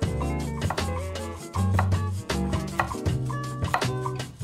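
Upbeat Latin-style background music with a bass line and percussion. Under it, a chef's knife slices fresh jalapeños against a wooden cutting board.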